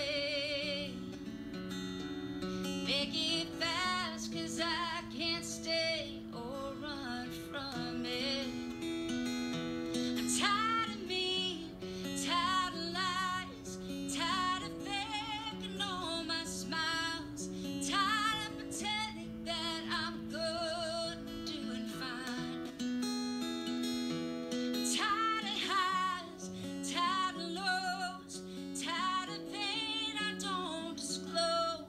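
A woman singing with a wavering vibrato on held notes, over acoustic guitar accompaniment, in a live studio performance.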